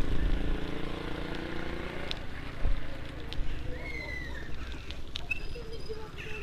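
Wind rumbling on the microphone and the bicycle rolling along a wet road, with distant voices in the first seconds and a few short high calls from the middle on.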